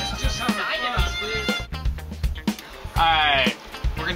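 String quartet playing sustained notes, with voices talking over it; a loud held note with a wavering pitch comes in about three seconds in.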